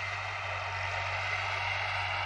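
Distant tractor engine running steadily as it pulls a disc harrow through the field: a constant low hum under an even noise.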